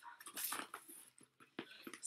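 Paper and cardboard rustling in a quick, irregular run of short crinkles and taps as a letter is drawn out of an opened cardboard box.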